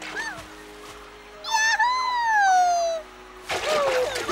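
A cartoon character's long cry that wavers and then falls steadily in pitch for about a second and a half, as if dropping from a height, over background music. Near the end comes a splash into water.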